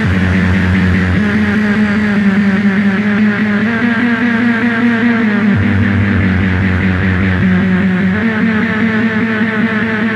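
Industrial power-electronics noise music made with analog electronics: a dense, distorted wall of noise with a fast fluttering texture over a loud low drone. The drone steps up in pitch about a second in and drops back down about halfway through.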